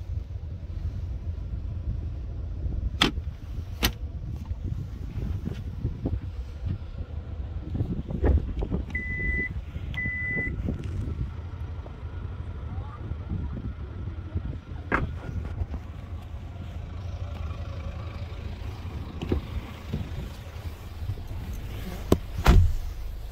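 Steady low wind rumble on the microphone outdoors, with a few sharp clicks and knocks. Two short electronic beeps of the same pitch about a second apart near the middle.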